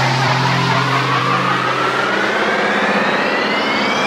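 Electronic dance music build-up with no beat: a synth riser climbs steadily in pitch over a rushing white-noise sweep. A low held bass note fades out about halfway through.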